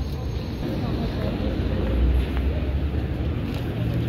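Street background noise: a low steady rumble of city traffic, with faint voices of passers-by.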